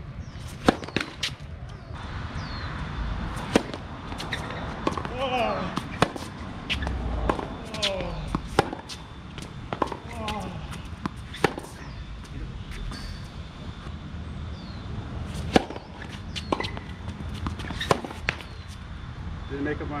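Tennis ball struck again and again by rackets in a baseline rally, opened by a serve, with sharp pops about one to two seconds apart and the ball bouncing on a hard court.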